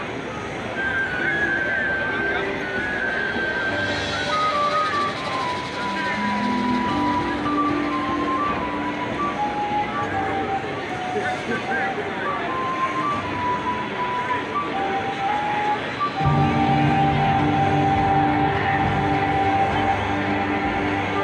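Solo flute playing a slow, lyrical melody over soft low held notes from the marching band. About sixteen seconds in, the full band comes in, louder and with low brass.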